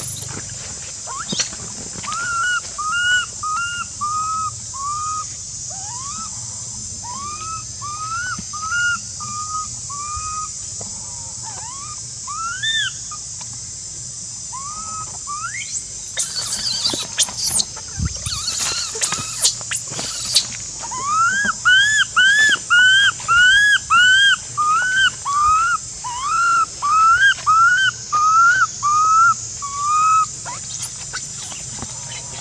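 An infant macaque crying with a long series of short, whistle-like rising-and-falling calls. From about two-thirds of the way in they come steadily at about two a second and louder. Harsh noisy bursts come shortly past the middle.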